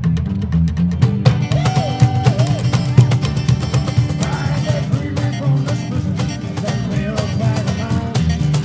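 A band of guitars plays a strummed tune with a steady beat: an electric guitar, an acoustic guitar and a long-necked, round-bodied plucked string instrument. About a second in the band sounds fuller, and a melodic lead line with sliding notes comes in over the strumming.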